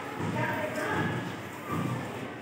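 Footsteps on a hard floor, a regular series of low thuds, with indistinct voices talking in the background.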